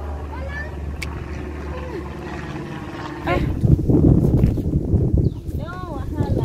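Faint voices over a low steady hum. About three seconds in, louder footsteps start on the wooden planks of a boardwalk, a run of knocks with a rumble under them.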